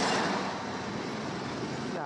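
Road traffic passing close by: a bus and cars going past with steady tyre and engine noise, the nearest vehicle fading about half a second in.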